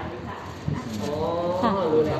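A woman's voice saying 'ค่ะ', the Thai polite particle, in short replies; the second one, about a second in, is long with a pitch that glides up and down.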